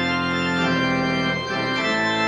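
Organ playing sustained full chords that shift a couple of times, the closing postlude after the benediction of a church service.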